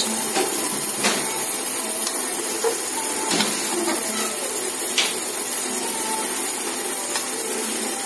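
Steady hiss of a pot of sauce with meat and fish cooking on the stove, with a few light clicks of a spoon against the metal pot about one, three and a half and five seconds in.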